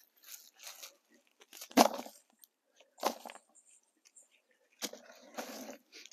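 Gloved hands scraping and pulling weeds and dry debris out of loose garden soil: a run of short crunching rustles with pauses between, the loudest about two seconds in.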